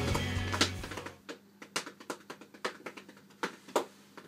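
Background music fades out over the first second, followed by a string of irregular light clicks and knocks as a person gets up out of an office chair.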